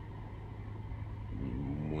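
Steady low hum and faint hiss of room background noise, with no clear single event. A man's voice comes in near the end.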